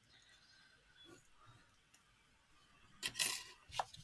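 Low-tack tape and thin metal cutting dies being peeled off die-cut card: faint paper handling, then a short papery rustle about three seconds in and a small click near the end.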